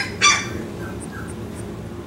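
An Australian Shepherd puppy of about three and a half weeks gives one short, high-pitched squeal about a quarter second in, over a steady low hum.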